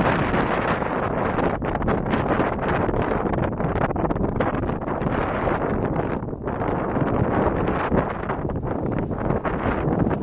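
Wind buffeting the microphone: a loud, steady rumble and rush that rises and falls in gusts, with a brief lull about six seconds in.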